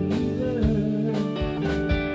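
Live band playing an instrumental passage: pedal steel guitar with sliding notes over electric bass, drums and guitar.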